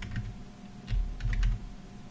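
Typing on a computer keyboard: short runs of quick keystroke clicks with soft thuds, as a word is entered in a code editor.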